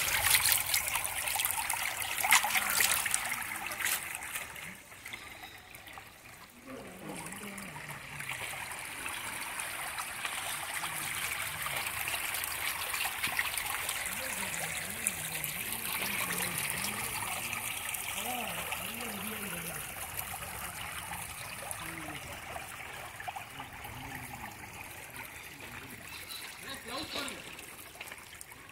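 Stream water running over rocks close to the microphone, loud for the first four seconds or so, then dropping to a softer rush. From about seven seconds in, faint voices of people talking can be heard over it.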